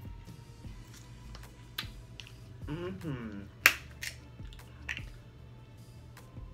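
Snow crab leg shells cracking and snapping as they are broken open and picked apart by hand: a scatter of sharp clicks, with the loudest crack a little past halfway. A short hummed "mm" comes just before that crack.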